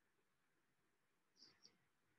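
Near silence: room tone, with two faint short ticks about one and a half seconds in.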